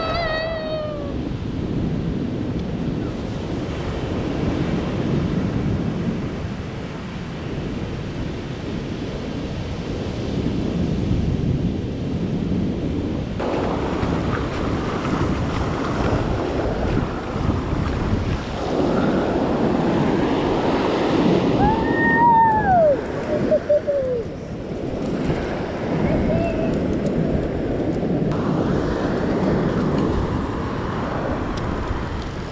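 Ocean surf breaking and washing up a sandy beach, with wind buffeting the microphone. About two-thirds of the way through, a couple of short rising-and-falling tones sound over the surf.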